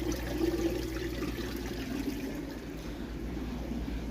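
Running water trickling steadily over a low, steady hum.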